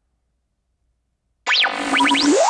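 Near silence for about a second and a half, then a loud synthesized sound effect starts suddenly, with quick falling and rising pitch sweeps.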